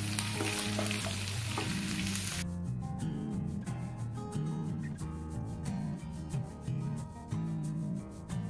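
Chicken and vegetables stir-frying in a hot wok, sizzling as a wooden spatula stirs them, over background music. About two and a half seconds in, the sizzling cuts off abruptly and only the music, with a steady beat, goes on.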